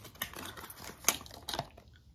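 Cardboard perfume box being opened by hand and the bottle slid out: rustling of card and paper with a few sharp clicks, the loudest about a second in.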